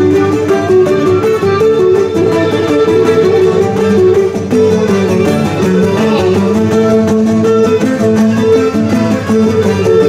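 Loud, steady live Cretan folk dance music on string instruments: a bowed lyra playing a quick melody over a plucked laouto accompaniment, with no break.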